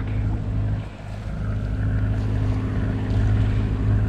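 A sailboat's engine running steadily under way, a constant low drone with water rushing along the hull. The sound dips briefly about a second in.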